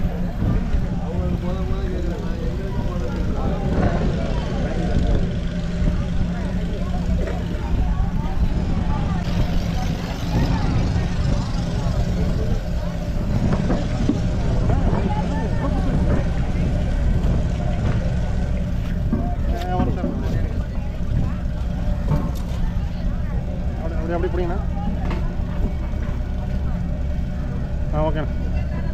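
An engine running steadily with a low, even hum, with men's voices talking over it now and then.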